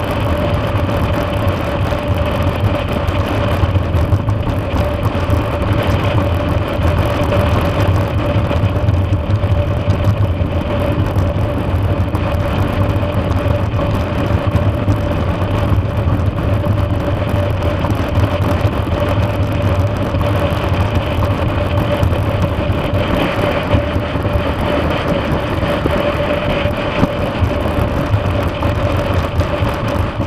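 BMW F650GS Dakar motorcycle with a single-cylinder engine, running at a steady cruise on pavement. The engine note holds an even pitch with no shifts or revving.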